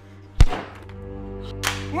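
Trailer music with a single deep boom-like impact hit about half a second in. A low droning swell follows and builds toward the end.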